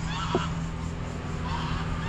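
Several short bird calls, a pair near the start and more in the second half, over a low steady hum.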